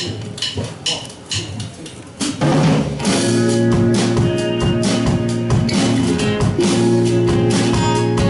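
Live rock band starting a song: a quiet, sparse opening of a couple of seconds, then the full band with drum kit, electric guitars and bass comes in loud a little over two seconds in and plays on steadily.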